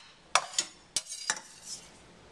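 Several sharp clinks and knocks of kitchen utensils against dishes, a few tenths of a second apart, dying away by the middle.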